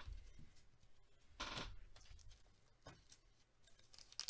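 Near silence: room tone, with one faint brief sound about a second and a half in and a small click near three seconds.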